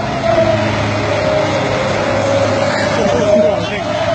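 Doosan 140W wheeled excavator's diesel engine running steadily under load as the boom swings and lifts the bucket, a steady high tone running over the engine hum. Voices are heard faintly over it.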